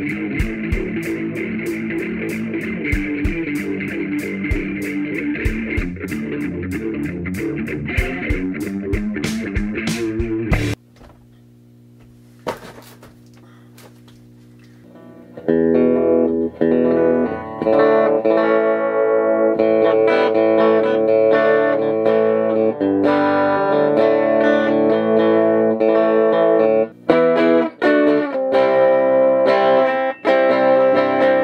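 Guitar music for the first ten seconds, cut off suddenly. Then a few seconds of low steady hum, and from about fifteen seconds in an electric guitar played through a homemade Watkins Westminster-inspired 10-watt tube guitar amp, notes and chords ringing from its speaker cabinet.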